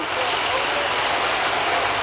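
Fire department vehicles driving past on a city street: the steady noise of their engines mixed with street traffic.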